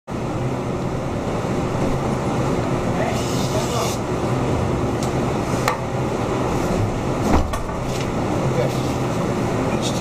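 Steady room hum with faint voices in the background. About three seconds in there is a brief rustle of butcher paper being handled on a wooden block, and a few light knocks follow, the loudest about seven seconds in.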